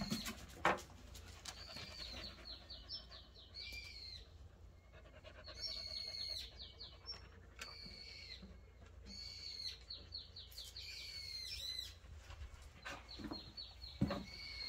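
A songbird singing high, arched whistled notes and quick runs of chirps, the phrase repeating every few seconds. A single sharp knock sounds just under a second in.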